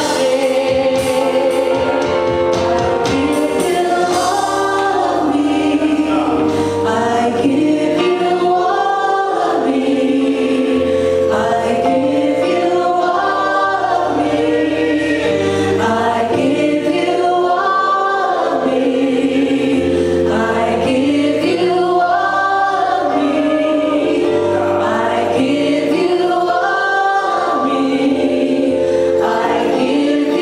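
A group of women singing a gospel worship song in harmony into microphones, long held chords that change every couple of seconds over a low bass line.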